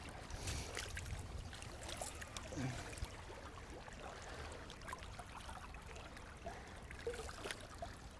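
Faint flowing water of a shallow river, with a few soft ticks and splashes as dip nets are worked through the water.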